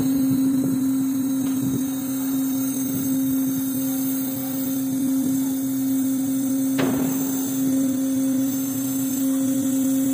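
Cargo ship hatch cover machinery running with a steady, even hum while the folding steel cover closes. A single sharp metallic knock comes about seven seconds in.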